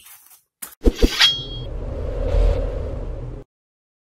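Channel logo sound effect: two sharp hits about a second in, a short metallic ring, then a loud rumbling whoosh that cuts off suddenly.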